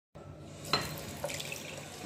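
Bathroom sink tap running water into a ceramic washbasin, with a sharp click about three-quarters of a second in and a smaller click about half a second later.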